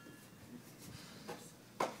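Quiet room tone with a few faint soft sounds, and a man's voice starting near the end.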